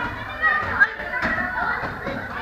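Children's voices and chatter in a large hall, mixed with a few sharp slaps of kicks landing on handheld foam kick pads, the loudest a little under a second in.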